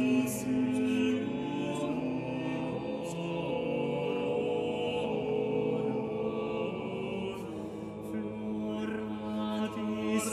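A small mixed-voice vocal ensemble, female and male voices, singing Renaissance polyphony, with several voices holding long overlapping notes.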